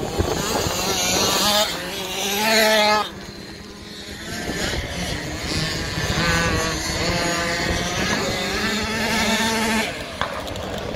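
Small 50cc two-stroke kids' motocross bikes revving, the engine pitch climbing and falling as they accelerate and back off. The sound changes abruptly about three seconds in.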